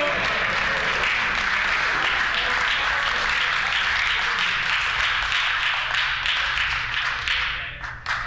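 Applause from a roomful of legislators, steady clapping that dies away shortly before the end.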